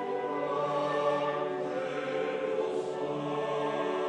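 A choir singing long held chords that shift slowly from one to the next.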